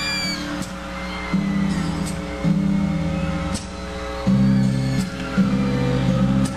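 Live band playing the instrumental intro of a pop ballad: sustained chords that change every second or so, with a light cymbal stroke on each change.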